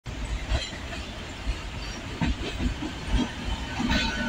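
Indian Railways WAP-7 electric locomotive and its train rolling past close by, with a steady rumble and irregular knocks as the wheels cross rail joints and points.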